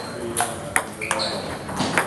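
Table tennis ball clicking off the paddles and table: a few sharp ticks at uneven spacing, over voices talking in the background.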